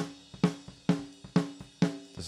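Close-miked acoustic snare drum, recorded with a Shure SM57, playing back a steady rock beat: five hard, evenly spaced hits about half a second apart, each ringing briefly. It is a clean, decent recording that has not been ruined.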